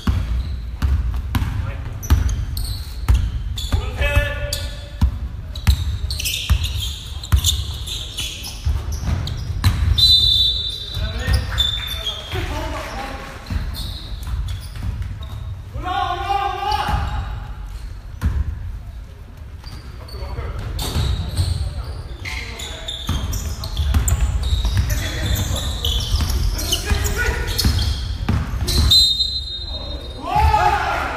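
A basketball being dribbled and bouncing on a gym court during play, with repeated thuds through the whole stretch, players shouting, and brief high sneaker squeaks about ten seconds in and near the end.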